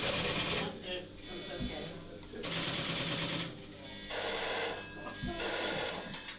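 An electric telephone bell ringing in several separate bursts of about a second each, the last two close together near the end.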